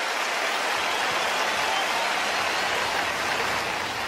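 A large arena audience applauding, a dense, steady clatter of many hands that starts to ease off near the end.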